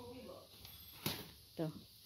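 A toddler rummaging in a clear plastic storage box of clothes, with one sharp knock about a second in.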